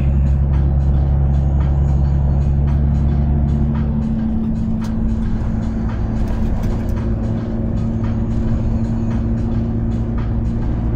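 Heavy truck's engine and road noise droning steadily from inside the cab at highway speed, with music playing over it; the low drone shifts about four seconds in.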